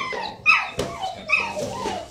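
Dogs barking and yipping, about four short falling calls roughly half a second apart, with a sharp knock a little under a second in.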